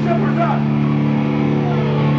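A live band's electric guitar and bass amplifiers holding a loud, droning chord that rings on steadily, with a voice shouting briefly in the first half second.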